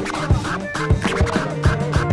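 Vinyl scratching on a Technics SL-1210 turntable: the record is pushed back and forth by hand and cut with the mixer's crossfader, giving short gliding scratch sounds over a steady hip hop beat.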